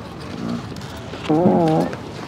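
A loud, drawn-out fart noise with a wavering pitch, lasting a little over half a second, starting just over a second in.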